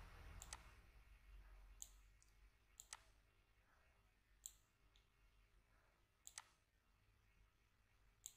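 Near silence with a handful of faint computer-mouse clicks, scattered a second or more apart and sometimes in quick pairs, as points on an on-screen curve are dragged.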